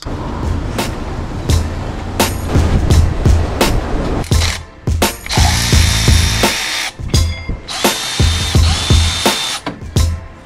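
A ratchet clicking in irregular runs as bolts are run in, with background music underneath.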